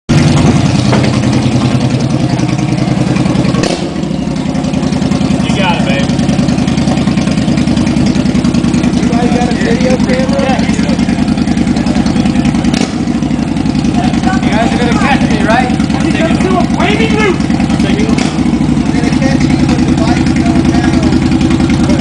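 Cruiser motorcycle's engine idling steadily.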